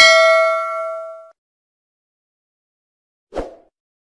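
Notification-bell ding sound effect of a subscribe-button animation: one bright chime ringing out and fading away over about a second. A short soft thump follows near the end.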